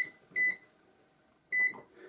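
Sam4S ER-900 cash register keypad beeping as keys are pressed: three short, identical beeps, the first right at the start, the next about half a second in and the last about a second and a half in. These are the key-entry beeps for the program code 7, 0 and subtotal.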